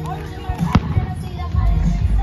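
Aerial firework shell bursting: one sharp bang about three-quarters of a second in, with a fainter pop just before it.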